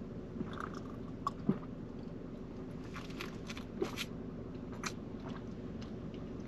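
A man drinking juice from a bottle: a few swallows and small wet mouth clicks, spaced irregularly, over a steady low hum inside a car.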